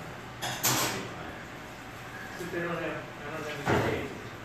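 Faint background talk in a room, with steady room noise. There are brief hissing noises about half a second in and again just before the end.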